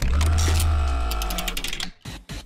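Short music stinger for a segment transition: a deep bass hit with sustained tones above it that fade over about two seconds, with quick ticking in the upper range toward the end, before it cuts off.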